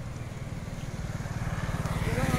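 A motor vehicle's engine running with an even low pulse, growing steadily louder.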